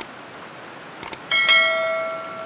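Subscribe-button animation sound effect: sharp mouse clicks, a double click about a second in, then a bell chime that rings on and slowly fades. Under it runs the steady rush of a shallow rocky stream.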